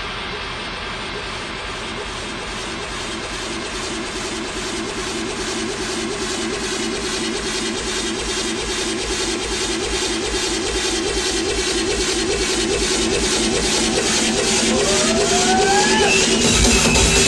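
Techno track in a build-up with no kick drum: a dense, engine-like wash of noise over a steady low drone, with fast, even ticks on top, growing steadily louder. A rising sweep begins near the end.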